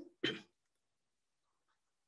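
A woman clears her throat once, briefly, near the start.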